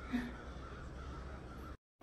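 Faint room tone with a low hum and a brief faint sound just after the start. It cuts off suddenly to dead silence just before the end.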